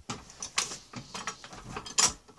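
Hydraulic car jack being pumped by hand under load, pressing against the dented bumper through the improvised pulling rig: an irregular run of mechanical clicks and creaks from the handle and rig.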